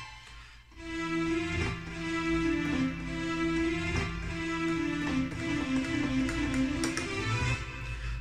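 Korg Pa-series arranger keyboard playing a melody phrase of held notes over a steady lower note. The melody starts about a second in.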